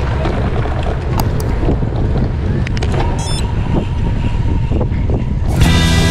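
Wind buffeting a bike-mounted camera's microphone, with tyre and road noise while cycling along a town street, and a few light clicks. Music starts near the end.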